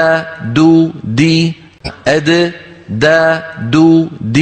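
A man's voice reciting the Arabic letter dal in slow, separate syllables, ad, da, du, di, each held about half a second in a steady repeated pronunciation drill.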